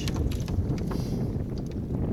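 Wind buffeting the microphone, a steady low rumble, with a few faint short clicks or knocks.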